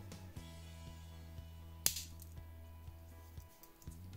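Soft background music, with one sharp metallic click about two seconds in as a Swiss Army knife's parcel hook snaps shut on its spring, and a few faint handling ticks.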